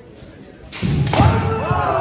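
Kendo attack: a sudden thump on the wooden floor and armour about three-quarters of a second in, then a loud, drawn-out kiai shout from the fighters.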